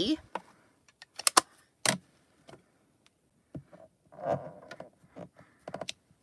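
Sharp plastic clicks and taps from ink pad cases and a clear acrylic stamp block being handled and set down while a stamp is inked and pressed onto card, a few in the first two seconds and a quick cluster near the end.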